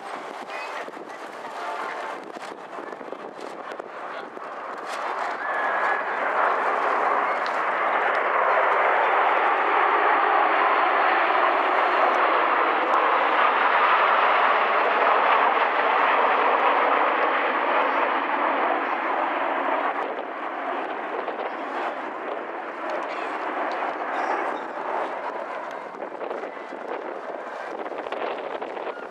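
Kawasaki T-4 jet trainers' twin turbofan engines passing overhead in formation with a broad rushing jet noise. It builds over several seconds, holds loudest for about ten seconds, then eases off in the last third.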